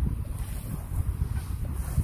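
Wind buffeting the microphone: a low, uneven, gusty rumble.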